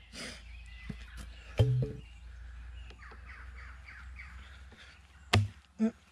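A steel axe head stuck in a log being worked free, with a single sharp knock of steel in wood about five seconds in: the Council Tool axe sticking in the cut. Faint birdsong runs underneath, and a man's short low vocal sound comes about a second and a half in.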